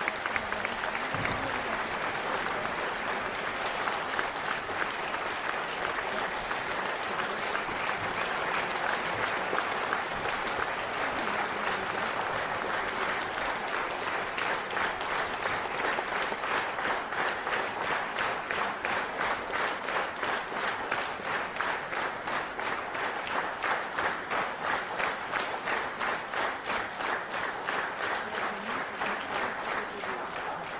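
Theatre audience applauding; from about halfway through, the clapping falls into a rhythmic unison beat of about two to three claps a second.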